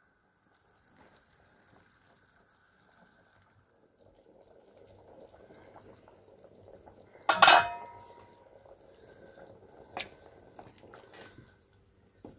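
Cow's-feet stew (kocha) bubbling quietly in a large metal pot. About seven and a half seconds in, metal strikes the pot once with a loud ringing clank, and there is a lighter knock about two and a half seconds later.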